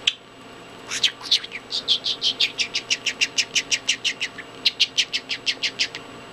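Budgerigar chirping: a few short high notes, then a fast, even run of them at about five a second, with a brief break near the end.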